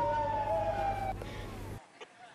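A siren winding down in one long falling tone that dies away a little past the middle, over low street noise. The sound cuts off abruptly near the end.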